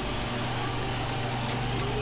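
Police water cannon truck with its engine running, firing a jet of water: a steady engine hum under an even hiss of spray.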